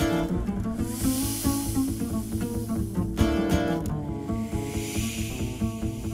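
Live acoustic jazz: guitar chords struck at the start and again about three seconds in, over a plucked double bass line. Between the chords come two breathy, hissing swells from the singer at the microphone, each rising and fading.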